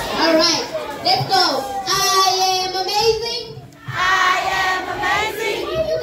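A group of children singing together in long held notes, breaking off briefly about three and a half seconds in before the singing picks up again.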